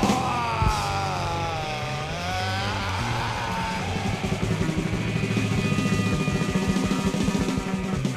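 Punk rock recording: a wavering, gliding tone over the first few seconds, then the full band plays a fast, driving beat of drums, bass and guitar from about four seconds in.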